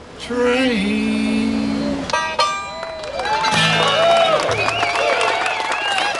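A bluegrass band of banjo, acoustic guitar and upright bass ends a song with a last strummed chord about two seconds in, then the audience cheers and whoops, with clapping building near the end.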